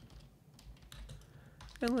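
Computer keyboard typing: a few scattered, light keystrokes.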